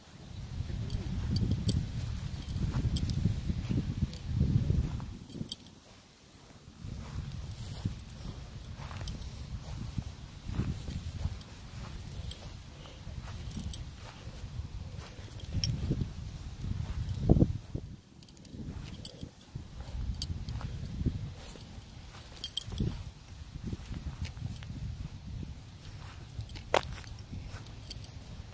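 Footsteps across grass with a low, uneven rumble of handling and wind noise on a phone microphone, rising and falling. There is a single sharp knock about 17 seconds in.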